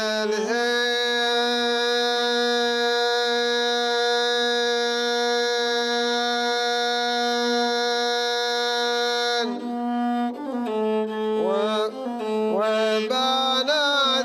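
A rababa, the Bedouin one-string bowed fiddle, played with a bow, most likely with a man's chant-like singing along with it. One long note is held steady for about nine seconds; then the melody moves in shorter, sliding notes.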